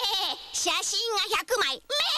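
High-pitched, wavering voice sounds in several short, bleat-like calls broken by brief gaps, from a television commercial.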